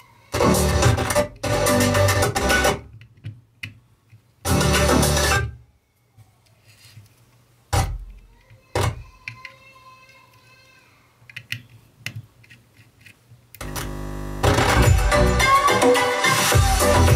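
Music played through loudspeakers by a two-channel Class D amplifier board. It cuts in and out in three short bursts while the input wiring is being worked on, with two sharp pops in the middle. Near the end it comes back and plays steadily.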